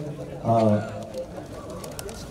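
A man's voice over a microphone and PA: one short, steadily pitched syllable about half a second in, then a pause with only low background noise.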